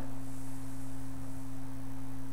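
A steady low hum made of two constant tones, one deep and one about an octave above it, over a faint hiss.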